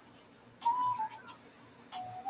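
A brief steady whistle-like tone, about half a second long, sounds near the start, dipping slightly at its end. Just before the end a second, lower tone begins.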